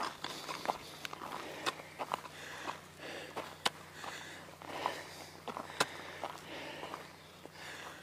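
Footsteps on a dirt and gravel hiking trail, a steady run of short irregular scuffs and clicks, with the walker's breathing heard softly between them on a steep uphill climb.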